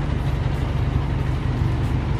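Minivan taxi's engine idling steadily at the curb, a low, even rumble.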